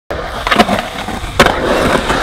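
Skateboard wheels rolling over a hard surface with two sharp clacks of the board, about half a second in and about a second and a half in.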